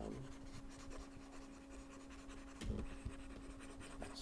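Faint scratching of a stylus nib dragged across a graphics tablet during sculpting brush strokes, over a steady low electrical hum.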